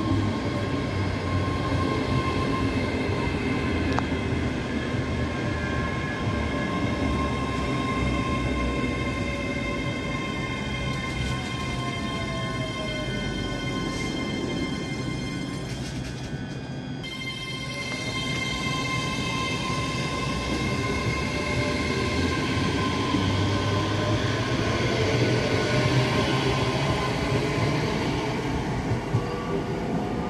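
ScotRail Class 385 electric multiple unit running through the station, wheel rumble under a steady electric whine from its traction equipment. About halfway through, one whine falls in pitch as the train slows; after a short break, it rises again as a train pulls away.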